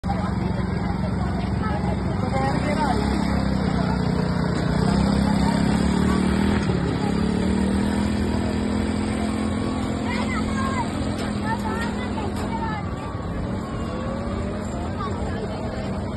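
Engine of a child-size quad bike running, its note rising and falling as it is ridden around a dirt track, with voices in the background.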